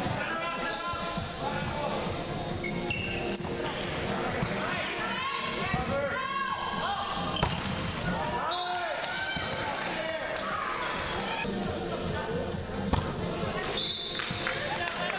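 Volleyball rally in a large gym hall: a few sharp smacks of hands striking the ball, the loudest about seven seconds in and near the end, over the continuous voices of players.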